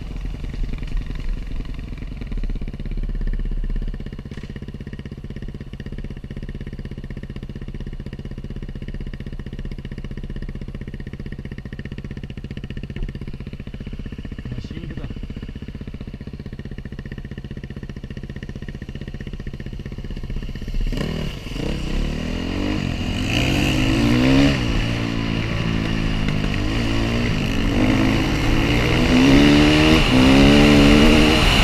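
Enduro motorcycle engine heard from the rider's helmet, running at steady low revs for most of the time, then about two-thirds of the way through getting louder and revving up and down repeatedly through the gears as the bike accelerates.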